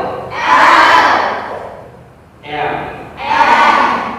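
A single voice gives a short prompt and a group of children repeat it aloud in chorus. This happens twice, and each chorus reply is longer and louder than the prompt.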